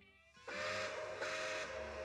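Steam locomotive whistle starting about half a second in and holding one steady note, with two surges of steam hiss.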